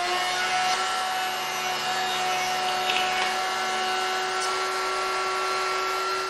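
Handheld plunge router running at a steady high whine as it is swung around a circle-cutting jig, its bit cutting through a round tabletop.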